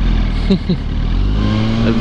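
Yamaha R1 sport bike's inline-four engine running at a steady highway cruise under heavy wind rumble on the camera microphone; the rumble eases about a second and a half in, leaving the engine note clearer. A laugh begins near the end.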